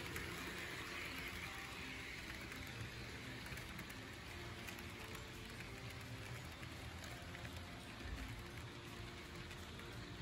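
HO-scale model freight train rolling past on the layout track: a faint, steady rush of small metal wheels on the rails with a low rumble beneath.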